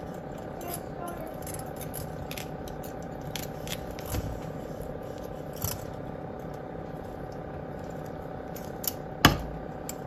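Pliers twisting a tie tight around an orchid division in a pot of bark chips: faint clicks and scrapes of the pliers and shifting bark, with one sharper click near the end, over a steady room hum.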